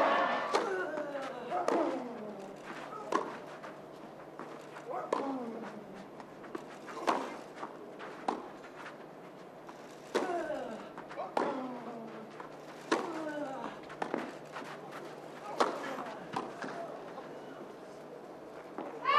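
Tennis rally on a clay court: about a dozen racket strikes on the ball, one every second or so, many followed by a player's short falling grunt, while the crowd stays hushed.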